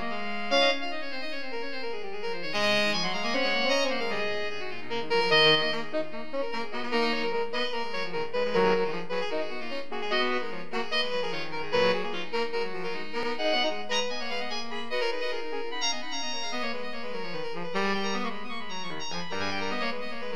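Saxophone quartet (soprano, alto, tenor and baritone saxophones) playing a fugue, several reed lines moving against one another at once.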